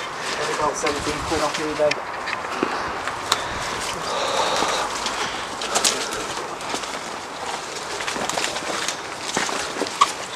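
Footsteps pushing through dense, overgrown undergrowth: leaves rustling and twigs cracking, with sharp snaps about three and six seconds in.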